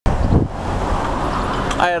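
Roadside traffic noise: a steady rush of passing cars, with low rumbling on the microphone in the first half second. A man's voice begins near the end.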